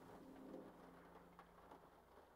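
Near silence, with a faint low hum that fades out.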